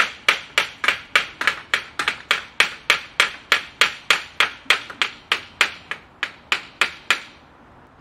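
Hammer tapping steadily on an old aluminum window frame, about three sharp blows a second, stopping about seven seconds in: the frame is being knocked loose from its concrete block opening.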